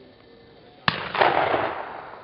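A single gunshot about a second in, a sharp crack followed by a rolling echo that fades away over most of a second.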